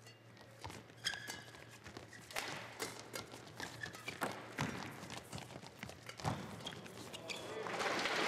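Badminton rally: repeated sharp racket strikes on the shuttlecock, mixed with brief squeaks of court shoes, and the crowd starting to applaud near the end as the point is won.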